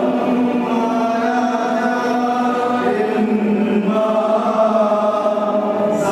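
A choir singing a slow liturgical chant in long held notes, moving to a new pitch every second or two.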